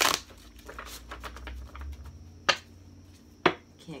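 A deck of tarot cards shuffled by hand: soft scattered card rustles and ticks, with two sharp card snaps, one about two and a half seconds in and a louder one about a second later.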